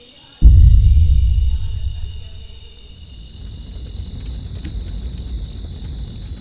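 A sudden deep boom about half a second in, fading over a couple of seconds into a low rumble, over a steady chorus of crickets chirring.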